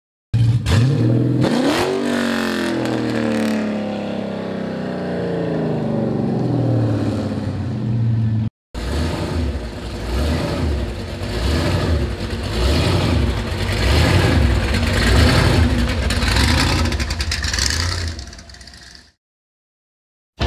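A hot-rod engine revving, its pitch rising and then slowly winding down; after a short break, a supercharged engine in an early-1950s pickup running with a lumpy, pulsing idle as the truck rolls along, fading out near the end.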